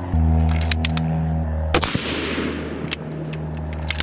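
A single rifle shot about two seconds in from a .308 Winchester Bergara B-14 HMR with a radial muzzle brake, its report ringing out for most of a second. Under it runs the steady drone of a propeller airplane overhead, with a few small clicks before and after the shot.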